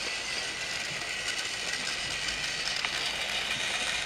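Toy train running along its track: a steady whirring with a few faint clicks.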